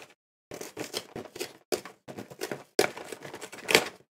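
Packaging of a cardboard Pokémon card collection box being handled and opened: crinkling and tearing in several short runs, with brief silent gaps between them.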